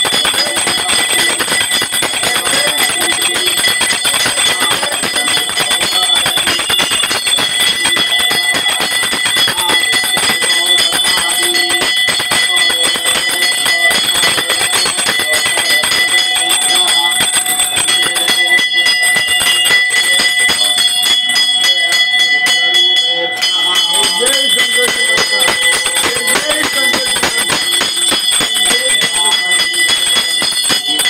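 Puja hand bell rung rapidly and continuously during an aarti, a steady metallic ringing with a short break about three quarters of the way through.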